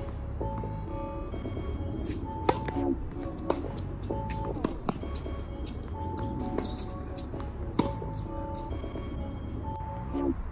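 Background music with long held notes, over which a tennis ball is struck by rackets and bounces on a hard court as several sharp, irregularly spaced knocks. The loudest knocks come about two and a half, three and a half and nearly eight seconds in.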